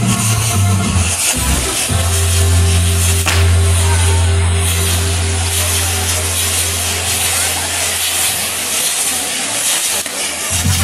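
Steady hissing of a burning fireworks castillo, its spark fountains and sparkler-lit frames fizzing, over loud music. In the music a long low note is held from about two seconds in until about eight seconds.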